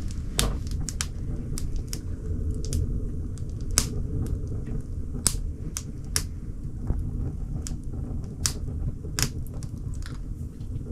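Wood fire crackling in a small wood-burning stove: irregular sharp pops and snaps, several a second, over a low steady rumble.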